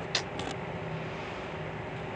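Steady background noise with a faint low hum, in a pause between spoken phrases. Two brief faint sounds come right at the start.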